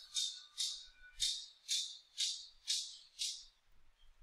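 A rhythmic shaker-like rattle: about seven short hissy strokes, roughly two a second, stopping about three and a half seconds in.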